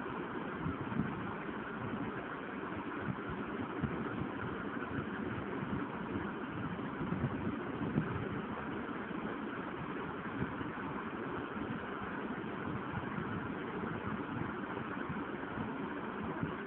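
Steady background noise, a hiss with an uneven low rumble underneath, holding at one level throughout, with no distinct events.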